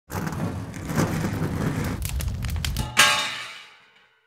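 Show-opening title sting: a dense, noisy burst of produced sound effects with several hits, ending on the loudest hit about three seconds in, which rings on and fades out.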